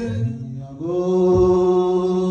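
Chanting with long, steady held notes: a low note at first, then a higher note held from just before a second in, with a brief low thump partway through.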